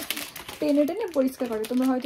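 A woman talking in a small room, with the crackle of a clear plastic bag as a wrapped floor wiper is handled.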